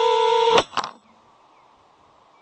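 Brushless motors of an FPV quadcopter (iFlight Nazgul5) whining at a steady pitch, cut off abruptly about half a second in. Two quick knocks follow, then only a faint hiss.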